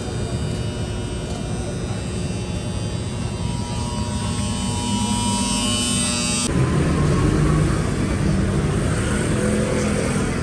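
Rumbling background noise with several steady high-pitched hums, which cuts off abruptly about six and a half seconds in and gives way to rumbling street traffic noise.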